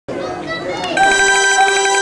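Murmur of voices, then about a second in an electronic keyboard comes in with a loud held chord, its upper notes pulsing with a tremolo: the opening of the accompaniment.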